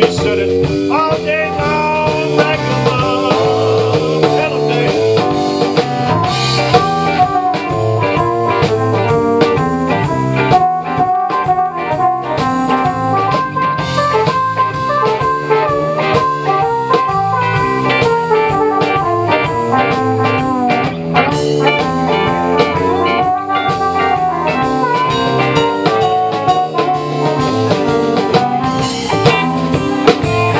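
Live blues band playing an instrumental passage: electric guitar, bass guitar, drum kit and keyboard.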